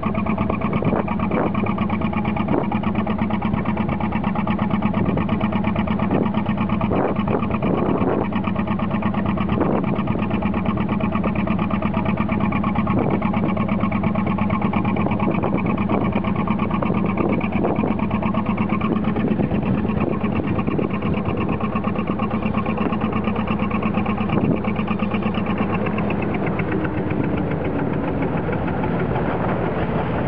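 A narrowboat's engine running steadily with a constant low hum, with irregular short knocks through the first twenty seconds, the hum easing off near the end.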